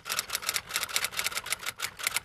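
Typing sound effect: a fast, even run of key clicks, about seven a second.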